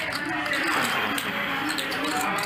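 Quiet, indistinct talk around a poker table, with faint clicking of poker chips being handled.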